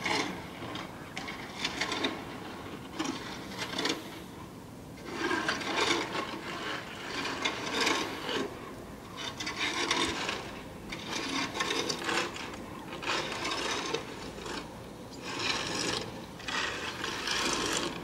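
Snow being cleared by hand, a rasping scrape repeated about once a second with a short pause about four seconds in.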